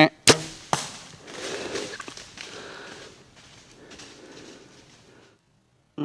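Bow shot at a whitetail buck: a sharp crack as the bow fires, a second crack about half a second later as the arrow strikes the deer, then the buck crashing off through dry leaves for several seconds, fading away. A short pitched call sounds right at the start, just before the shot.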